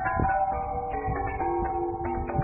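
Tuned metal tubes mounted along a wall, struck one after another by a wooden stick dragged across them. They ring out a run of notes that steps down in pitch, each note sounding over a light knock of wood on metal.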